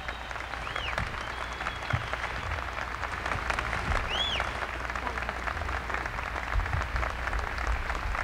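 Audience applauding steadily, with two short rising-and-falling whistles, the first about a second in and the second about four seconds in.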